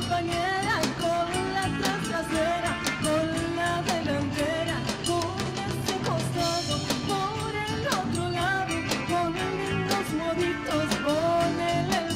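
Live band playing Argentine folk dance music, with a drum kit keeping a steady beat under guitar, bass and a wavering melody line.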